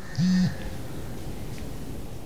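Mobile phone on vibrate giving one low buzz of about a third of a second just after the start, signalling an incoming call.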